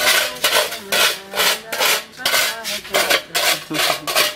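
Flat metal trowel blade scraping across a gritty concrete floor in repeated strokes, about two a second.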